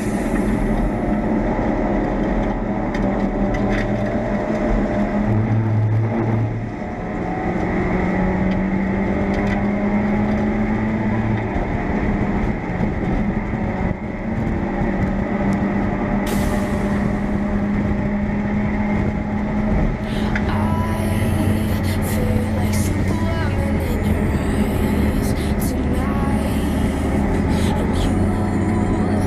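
In-car sound of a Mazda MX-5 race car's four-cylinder engine running hard on track, with wind and road noise in the open cockpit and steady, loud throughout.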